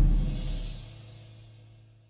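The tail of a short music sting: a deep drum hit booming out with a held low bass note, both fading away to nothing near the end.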